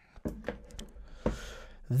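Faint handling noises: a few light clicks and taps as a hardware wallet and its protective case are picked up and moved about by hand.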